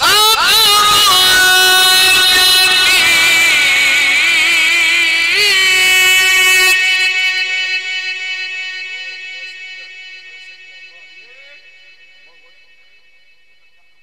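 A male Quran reciter in the melismatic mujawwad style, amplified through a microphone, holds one long, loud note with vibrato. The voice stops about seven seconds in, and the note dies away over the next few seconds in a long reverberant tail.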